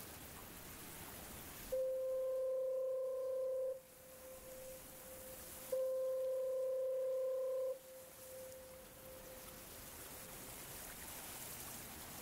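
Two long, steady, mid-pitched tones over a background hiss, the first about two seconds in and the second about six seconds in. Each lasts about two seconds and stops abruptly, leaving a fainter fading tail.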